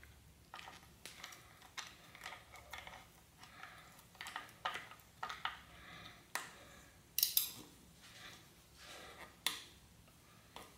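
Screwdriver working the mounting screw of a bicycle downtube shift lever: light, irregular metallic clicks and scrapes. Sharper metal clinks come about seven seconds in and again near the end as the lever is handled.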